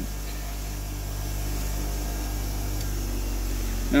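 Electric 6-inch bench grinder running steadily, its motor giving a constant hum under a faint hiss.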